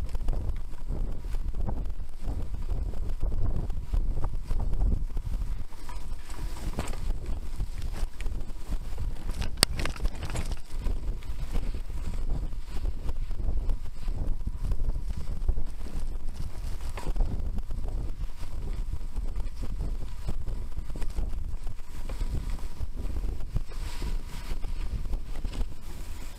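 Mountain bike riding a bumpy dirt singletrack: wind buffeting the on-bike camera's microphone over a steady rumble and rattle of tyres and frame. There is one sharp knock about ten seconds in.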